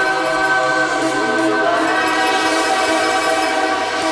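A sustained, horn-like synth chord held steady without a beat, in a breakdown of a tech house DJ mix.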